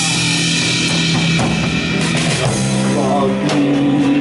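Rock band playing live: drum kit with a dense wash of cymbals and bass drum, under bass guitar and distorted electric guitars.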